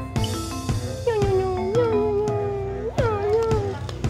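Background music with a steady beat. Over it, a long wailing, voice-like sound swoops up and is held from about a second in, then swoops up again just before the three-second mark and fades out near the end.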